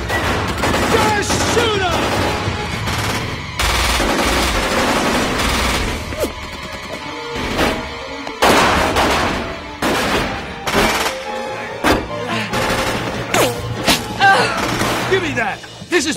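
Film shootout: many guns firing in repeated volleys and rapid runs of shots, over a dramatic music score.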